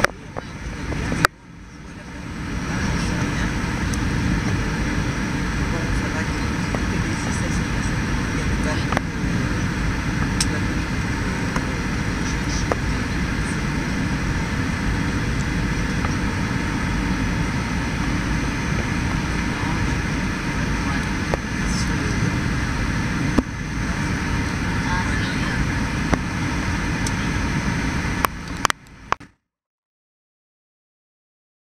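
Airliner cabin noise during a low approach: a steady rumble of engines and airflow. It breaks off briefly with a click about a second in, then cuts off abruptly just before the end.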